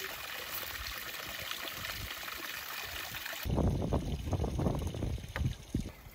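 Spring water pouring and splashing from a spout over a basket of greens being rinsed. About three and a half seconds in, this cuts off abruptly to uneven wind rumble on the microphone, with a few light ticks.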